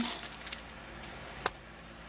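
Handling of cardboard craft-kit pieces and their plastic bag: a soft rustle dying away, then quiet with one sharp tap about one and a half seconds in.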